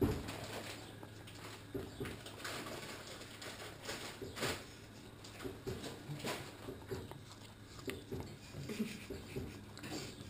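A cockapoo licking at an ice lolly held to its mouth: repeated, irregular licks and mouth smacks, about one or two a second.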